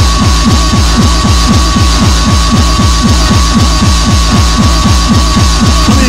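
Hardcore techno track played from vinyl: a fast, distorted kick-drum beat, each kick dropping in pitch, with a steady high tone held over it.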